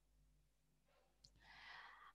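Near silence, then a faint intake of breath near the end, drawn in through a headset microphone just before speaking.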